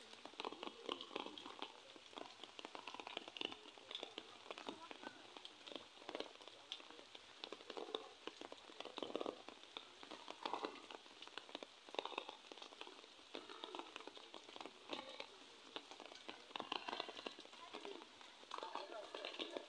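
Faint, indistinct voices over a light, irregular patter of small splashes and crackles, like water dripping and splashing.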